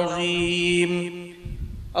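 A man's voice holding one long, steady chanted note, which fades out just over a second in.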